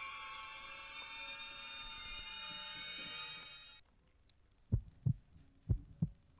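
A held music chord that cuts off abruptly about four seconds in, followed by a heartbeat sound effect: two low double thumps about a second apart.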